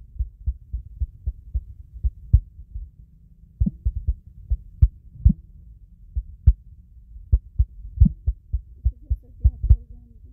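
An irregular run of dull low thuds, several a second, some with a sharp click on top, over a steady low hum.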